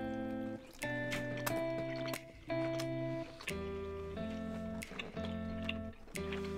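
Quiet background music: held chords that change about once a second, with short breaks between them.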